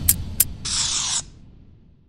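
Closing outro sound effect: the last of a bass line dies away, two sharp clicks follow, then a short hiss of about half a second that cuts off abruptly.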